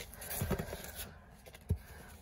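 Light handling of a cardboard box and its printed paper card: faint rustling and scraping, with one short knock near the end.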